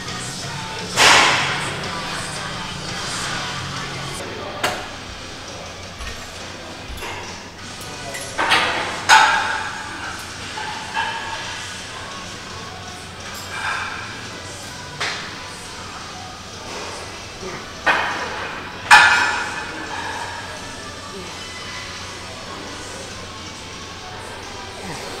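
Metal gym weights clanking in a large hall: about nine irregular sharp knocks, each with a ringing tail, the loudest about a second in and again near the end of the third quarter, over a steady background of gym noise.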